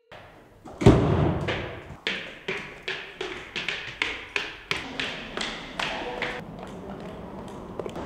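A door shuts with a heavy thud about a second in, then high heels click down stone stairs at about two and a half steps a second, growing fainter and dying away after about six seconds.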